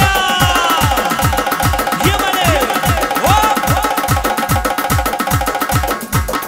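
Instrumental dance music from electronic arranger keyboards: a fast beat of deep drum hits falling in pitch, about three a second, over sharp clicking percussion, with synthesizer lines that bend in pitch about two and three seconds in.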